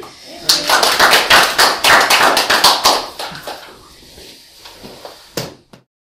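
Applause from a small audience: dense clapping for about two and a half seconds that thins out to a few scattered last claps near the end.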